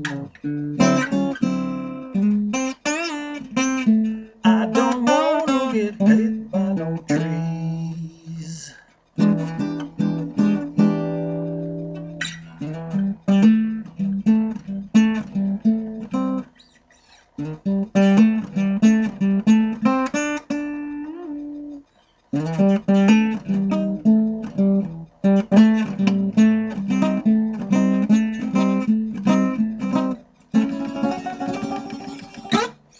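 Acoustic guitar and harmonica playing an instrumental blues passage, with the music stopping briefly three times.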